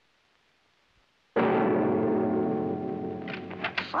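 A cartoon doorbell rung as one gong-like tone that starts suddenly about a second and a half in and rings on, slowly fading.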